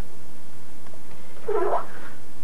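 A baby's single brief vocal sound about one and a half seconds in, over steady background hiss.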